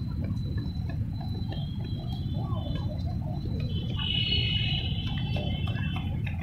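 Wind rumbling on the microphone. A bird calls high and warbling for about a second and a half near the end.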